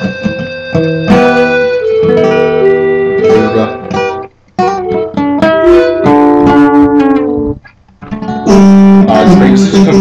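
Acoustic guitar being played, picked notes and chords, with two brief breaks about four and eight seconds in and fuller, louder strumming near the end.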